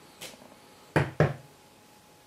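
A light tick, then two sharp knocks about a quarter second apart just after a second in: a rubber stamp being brought down on the acetate and the craft table.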